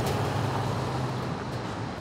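City street traffic: a box truck drives past with a steady low engine hum and road noise that slowly fades as it moves away.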